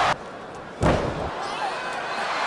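A wrestler's body slamming onto the ring canvas: one loud, sharp impact with a short booming tail a little under a second in. Arena crowd noise is heard around it and drops out abruptly at the very start.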